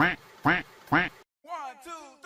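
A person laughing in three short bursts about half a second apart, each rising and falling in pitch. The sound cuts off suddenly, then a few short high vocal sounds come in, falling in pitch.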